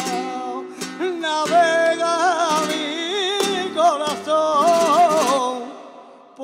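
Flamenco cante: a man sings a long, heavily ornamented line that bends up and down in pitch, over a Spanish guitar's strums. It fades out just before the end.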